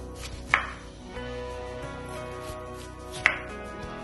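Chef's knife slicing through a red onion and striking a bamboo cutting board twice, once about half a second in and again near the end, over soft background music.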